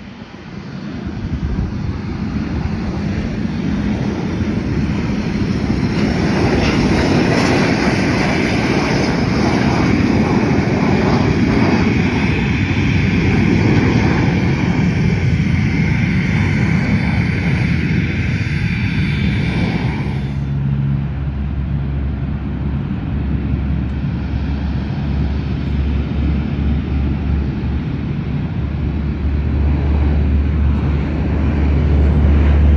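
Jet aircraft engines running loud on the airfield: a roar with a high whine that builds over the first two seconds, then the high part cuts off suddenly about twenty seconds in, leaving a low rumble.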